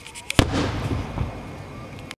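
A fireworks aerial shell bursting: a few small pops, then one sharp loud bang about half a second in, followed by a long rumbling echo.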